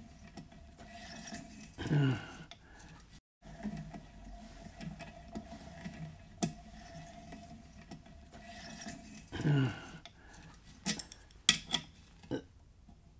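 Bottoming tap being turned by hand with a tap wrench, cutting threads deeper into a cast-iron Atomic 4 engine block: faint scraping with a few sharp metallic clicks, several close together near the end. Two short breathy vocal sounds from the man working the wrench, a few seconds apart.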